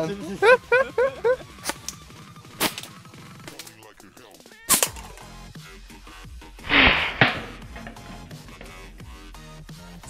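Shots from a homemade PVC-pipe blowgun firing nail-tipped darts at cans and glasses: a few sharp clicks, a loud sharp crack about halfway through, and a short hissing puff of air about two-thirds of the way in, over quiet background music.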